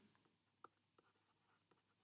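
Near silence with a few faint taps of a stylus on a tablet screen during handwriting, clustered between about half a second and one second in.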